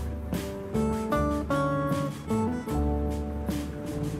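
Background music: an acoustic guitar playing plucked and strummed chords that change every fraction of a second.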